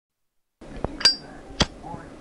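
Three sharp clinks after a brief silence, the second with a short high ring, over faint background noise.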